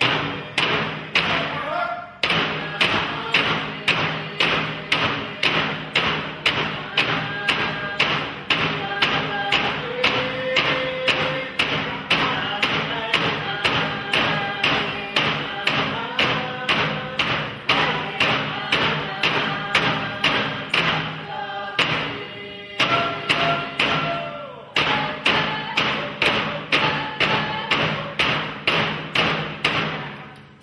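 Alaska Native frame drums struck in a steady beat of about two to three strokes a second, with a group singing along. The drumming and singing break off briefly twice, then resume.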